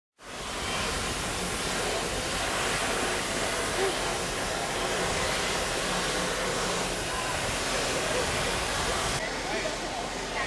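Steady rushing wind noise on a handheld camera's microphone, with faint voices beneath it. The hiss changes abruptly about nine seconds in, losing its highest part.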